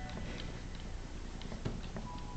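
A few light, irregular ticks and clicks, with one sharper click a little past halfway, over a steady low hum.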